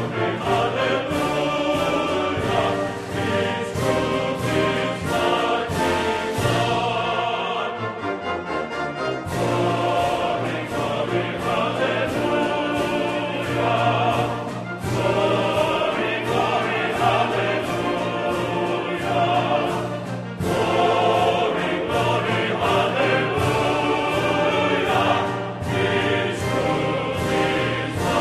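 Classical choral music: a choir singing with orchestra, in long sustained phrases broken by a few short pauses.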